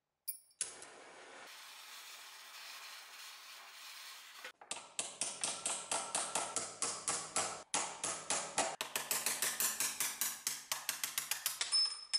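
Rapid hammer blows with a metallic ring, knocking a mortise chisel out of its old wooden handle: about four strikes a second, a brief pause, then a faster run of about six a second. A steady hiss comes before the hammering.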